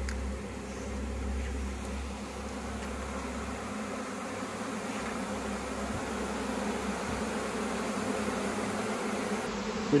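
A swarm of honeybees buzzing steadily in the air and over an open hive box, a dense even hum, with a low rumble underneath for the first few seconds.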